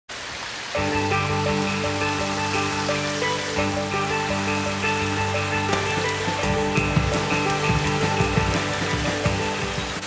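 Instrumental background music with sustained chords, beginning about a second in, over a steady rush of running water from a pond stream and waterfall.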